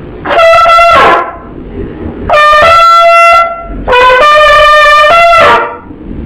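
Trumpet playing three short, loud phrases of high ornamental notes, the notes mostly stepping upward within each phrase.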